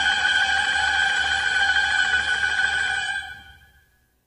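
Orchestral film-score music: the orchestra holds a sustained chord that fades away about three seconds in.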